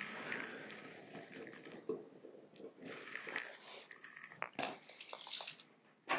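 Faint handling noises: scattered small clicks and soft rustling as hands press an adhesive limb pad onto a compound bow's limb and measure along it with a tape measure.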